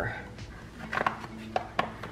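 Metal cake spatula cutting into a cake in a disposable aluminum foil pan, the blade knocking and scraping against the thin foil with a few sharp clicks between about one and two seconds in.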